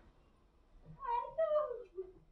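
A cat meowing once, quietly, about a second in: a high call that falls in pitch.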